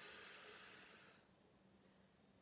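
A woman's long, breathy exhale, a soft hiss that fades away a little over a second in, as she breathes out through a Pilates shoulder stretch.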